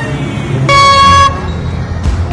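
Handheld air horn sounding one short, shrill blast of about half a second near the middle, steady in pitch.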